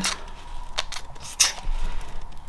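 Cap of a squeeze bottle of craft glue being twisted off, with three sharp clicks and light rubbing of the plastic cap against the bottle.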